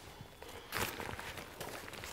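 Faint handling noise from a rucksack: soft fabric rustles and scuffs as its top drawcord is pulled tight, loudest a little before one second in.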